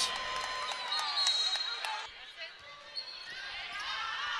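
Indoor volleyball court sounds: scattered voices of players and spectators in the hall, with knocks of the volleyball being handled and struck as play restarts. The level drops about two seconds in.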